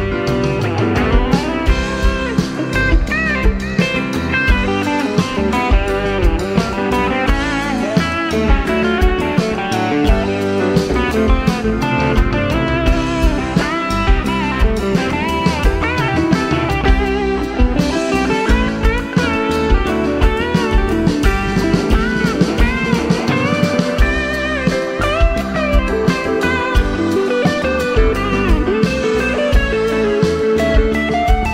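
Live jam-band rock played by a full band: an electric guitar lead with bending notes over drums, bass and keyboards.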